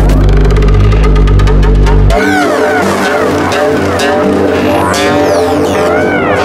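Melodic techno from a DJ mix: a heavy bass line until about two seconds in, when the bass drops out suddenly, leaving layered synth lines with repeated swooping notes.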